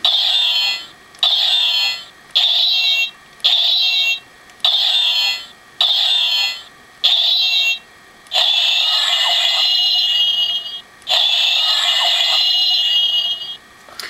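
Electronic clanging sound effects from the Power Rangers Super Megaforce Deluxe Super Mega Saber toy's small speaker, thin and tinny. Seven short clangs come about a second apart, followed by two longer effects of about two and a half seconds each.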